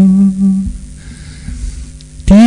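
Buddhist monks chanting in Pali on a steady low monotone. The held note fades away within the first second, leaving a brief pause with a faint low rumble.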